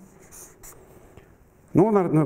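Marker pen scratching faintly in short strokes on flipchart paper, ending about a second and a half in.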